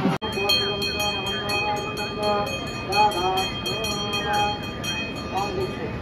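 A man's voice chanting in short phrases over a steady high-pitched ringing tone.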